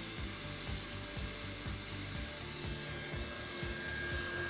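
Handheld hot-air plastic welding gun running, its blower giving a steady hiss as the welding tip warms up before a weld.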